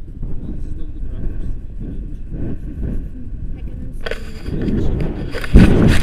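Wind buffeting an action camera's microphone in flight under a tandem paraglider, a steady low rumble. About four seconds in it swells into a much louder, harsher rush, loudest near the end.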